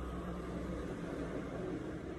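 Steady low hum with an even hiss: indoor background noise, with nothing else happening.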